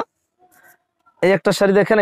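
A man speaking Bengali. About a second in there is a short gap in his talk holding only a faint rustle of sari fabric being spread out, and then the speech resumes.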